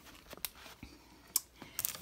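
A few scattered light clicks and taps of a hand handling storage bins and shelving, the sharpest a little past halfway.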